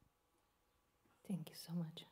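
Near silence for just over a second, then a woman's soft voice begins speaking into a microphone.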